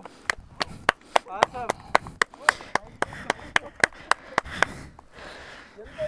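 Steady rhythmic hand clapping, about three to four claps a second, stopping near the end, with faint voices between the claps.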